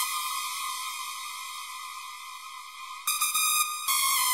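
Electronic music intro: a bright, sustained synthesizer tone that slowly fades, struck again about three seconds in and once more near the end.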